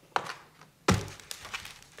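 Hands pressing a sheet of glossy photo paper down onto a cardboard-box work tray: a faint tap, then one sharp thunk about a second in.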